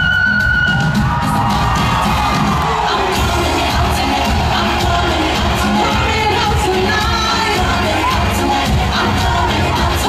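Live pop performance: a flute note held for about the first second, then a woman singing over the band while an arena crowd cheers and whoops.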